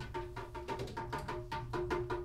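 Prepared double basses played percussively in free improvisation: a quick, even run of dry taps and clicks, about five or six a second, several with a short pitched ring.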